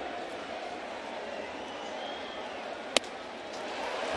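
Steady murmur of a stadium crowd, then about three seconds in a single sharp crack as the pitched baseball arrives at the plate.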